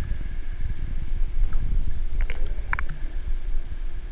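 Low, steady underwater rumble of water moving around the camera, with a faint steady hum under it and a few brief high squeaks in the middle.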